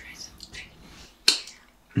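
A person whispering a short question, then one short, sharp snap-like sound just over a second in.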